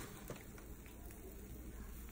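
Faint, steady low hum with a faint background haze and one light tick about a third of a second in: a near-quiet kitchen background.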